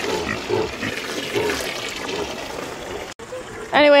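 Water from a garden hose splashing into a plastic kiddie pool as it fills, with a pig grunting. The splashing cuts off about three seconds in.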